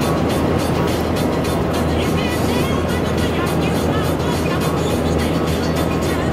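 Steady road and engine noise inside the cab of a Dodge Ram dually pickup driving at highway speed, with music playing over it.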